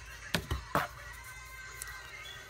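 Handling noise from trading cards and a foil booster pack: three quick taps and clicks in the first second as the cards are set down and the next pack is picked up, over faint background music.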